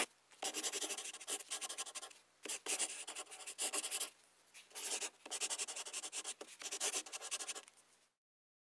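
Writing on paper: scratchy strokes in several bursts with brief pauses between them, stopping shortly before the end.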